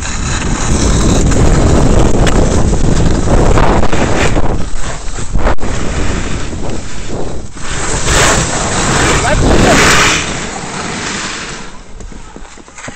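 Wind buffeting the microphone of a camera carried by a skier moving fast downhill, mixed with the hiss and scrape of skis carving over snow; loud and rough, easing off after about ten seconds.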